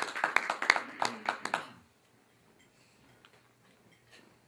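Audience applause, many people clapping, that stops about two seconds in.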